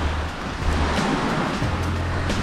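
Steady rushing of waves washing onto the shore, with wind rumbling on the microphone.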